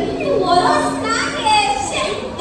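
Speech: dialogue from actors on a stage, heard in a large, echoing hall.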